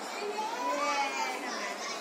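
A young child's voice babbling briefly over steady background noise.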